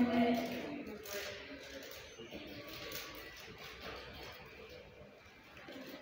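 A woman's high-pitched voice making a station announcement over the public-address loudspeakers, echoing in the station. It is loud for the first second, then quieter speech goes on to the end.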